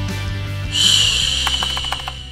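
Background music from the edit, with a bright, high shimmering swish coming in suddenly just under a second in and the music beginning to fade near the end.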